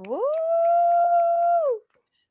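A woman's long, excited "ooh": her voice slides up, holds one high note for about a second and a half, then drops away.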